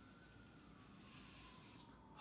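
Near silence: room tone, with a faint thin tone that drifts slightly in pitch.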